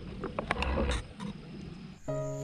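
A spoon clicking and scraping against a small metal camping pot, several light clicks in the first second. A low rumble runs from about half a second to a second in.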